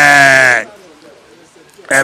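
A man's voice holding one long drawn-out syllable at a steady pitch for about half a second, then quiet until speech starts again near the end.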